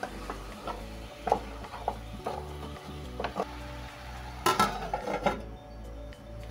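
A spoon stirring minced meat, potatoes and chopped vegetables in a metal pot, knocking against the pot's side every second or so. Near the end comes a louder burst of metal clatter as the lid goes on the pot.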